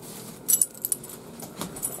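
Light jingling clicks of small hard objects in a few short bursts, about half a second in, near the middle and near the end.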